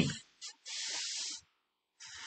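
A short breath into the microphone: a hiss lasting under a second, with a brief puff just before it.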